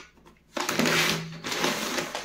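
A paper courier bag rubbed and handled with cotton-gloved hands. It is quiet at first, then about half a second in a loud rasping rustle of stiff paper lasts about a second, and lighter rustling follows.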